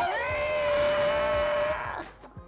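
A woman's long, high, drawn-out vocal exclamation: one held note that rises at the start and stays steady for nearly two seconds, then stops.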